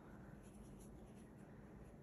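Near silence, with only the faint rustle of yarn being drawn through loops by a crochet hook.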